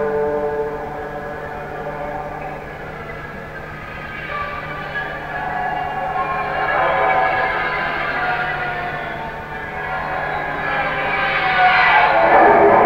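Electric guitar played with a violin bow: long, wailing, sliding notes that swell and fade, over a steady low drone, growing louder near the end. This is the bowed-guitar section of a live rock performance.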